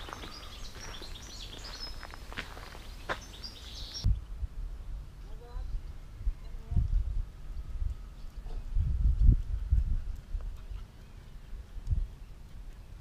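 Outdoor ambience with faint bird chirps for the first few seconds, then irregular low rumbling gusts of wind on the microphone.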